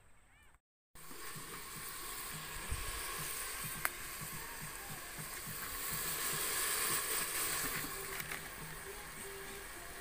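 Chopped meat sizzling and frying in an aluminium pot over an open wood fire: a steady hiss from about a second in, with one sharp pop about four seconds in.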